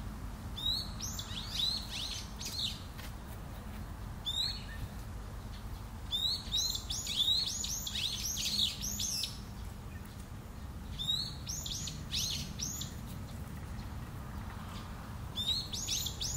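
A small bird chirping in quick bursts of high, arching notes, five or so bursts a few seconds apart, over a steady low background rumble.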